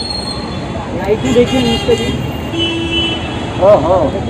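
Street traffic noise with a short, steady vehicle horn toot about two and a half seconds in, lasting under a second, among people's voices.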